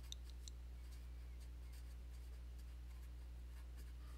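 Sharpie felt-tip marker writing on paper, faint strokes over a steady low hum.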